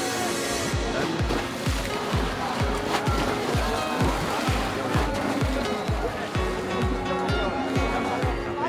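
Background music with a steady, fast beat, a little over two beats a second.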